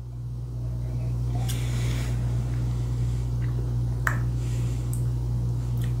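A man sipping bourbon from a tasting glass and working it around his mouth, with faint wet mouth and breathing sounds and a couple of soft small clicks. A steady low hum lies under it all and is the loudest sound.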